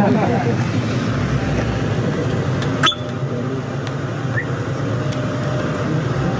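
A person laughs, with voices in the background, over a steady low rumble. There is a single sharp click a little under three seconds in.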